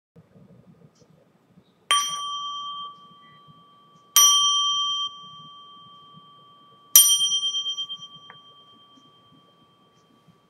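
A small bell struck three times, about two and a half seconds apart, each strike a clear ringing tone. The first two rings are cut short after about a second; the third rings on and fades slowly with a wobbling pulse.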